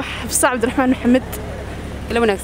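A woman speaking briefly over a steady low hum of street traffic.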